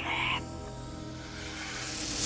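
Held notes of background film music, opened by the last half second of a hissing, whispered voice speaking Parseltongue, the snake language.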